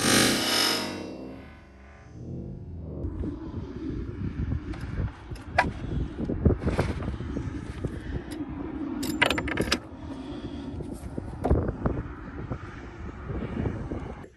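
Wind rumbling on the microphone with scattered sharp clicks and knocks, after a loud rush of noise in the first second and a half. Among the clicks is the Hi-Point JH45's striker falling on a .45 ACP round loaded with CFE 223 rifle powder: no bang, the round squibs.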